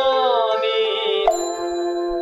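Closing music made of struck bell tones: long ringing notes overlap and hang on, and a fresh strike lands a little over a second in.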